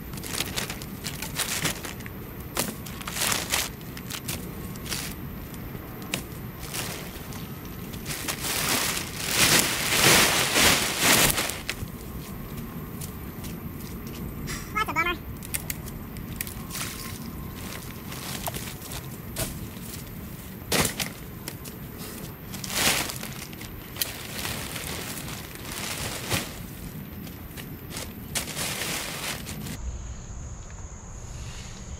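Plastic sheeting being dragged and crinkled off a hole and dead tree branches being handled, with scattered knocks and snaps of wood. A louder spell of rustling comes about nine to eleven seconds in.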